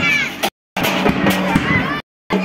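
Procession band of brass hand cymbals and a drum, with sharp repeated cymbal strikes over shouting voices. The sound cuts out completely for a moment about a quarter of the way in and again at the end, as if the recording drops out.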